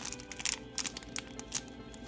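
Soft background music, with several short crinkles from a foil Dragon Ball Super Card Game booster pack as the cards are drawn out of it.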